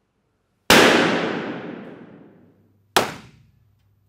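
Two balloon pops used as an acoustics test. The first, in an untreated classroom, rings on in a long echoing tail of nearly two seconds. The second, about two seconds later in a classroom with a sound-absorbing ceiling, dies away within about half a second.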